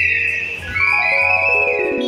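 Background music laid over the video: a high, sliding whistle-like tone held in two long notes over a low steady bass.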